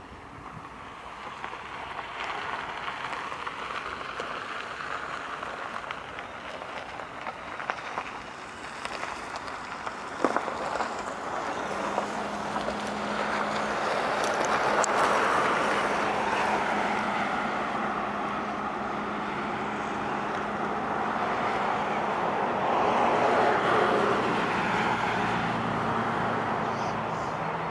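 Road traffic noise that swells and fades as vehicles pass, loudest a little past the middle and again near the end, with a steady low hum coming in about twelve seconds in.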